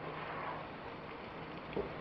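Low, steady sizzle of ackee and salt mackerel frying in oil in a pan, with a single light click near the end.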